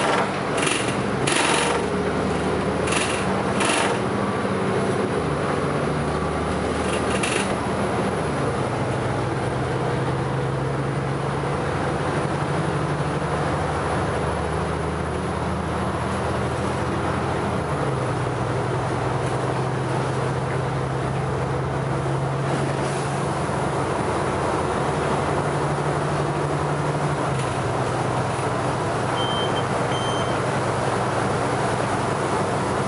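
Inside a Sunwin city bus under way: steady engine drone and road noise. The engine note steps up or down in pitch a few times, with several sharp knocks or rattles in the first eight seconds.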